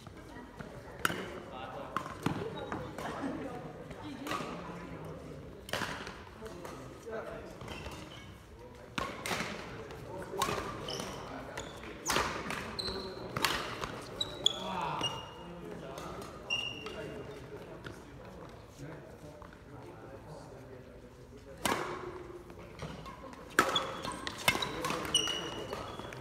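Badminton rally: rackets hitting a shuttlecock in a string of sharp cracks, with short high squeaks of court shoes on the wooden floor, mostly in the second half, and voices in the hall.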